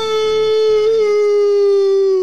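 A person's drawn-out "boooo", booing on one long held note that sags slightly in pitch near the end.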